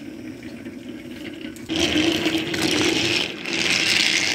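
Small electric motor of a battery-powered toy train running with a steady hum. From about two seconds in, a much louder rushing noise from the train close to the microphone takes over; it breaks off briefly and then returns.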